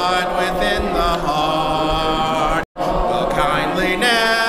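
Voices singing a hymn a cappella, with a man's voice leading and long notes held without instruments. The sound cuts out completely for an instant about two-thirds of the way in.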